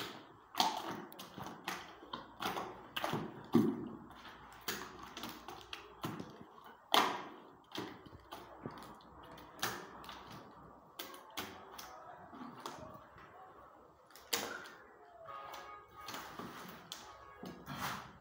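A bare hand stirring a thick mix of plaster of Paris powder and emulsion paint in a plastic bucket, making an irregular run of clicks and knocks.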